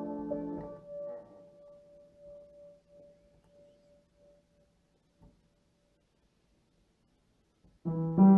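Piano chord dying away over the first second, one high note ringing on and fading out, then a few seconds of near silence before the piano comes back in with loud chords near the end.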